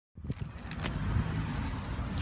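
Low rumble of outdoor background noise, with a few light clicks in the first second.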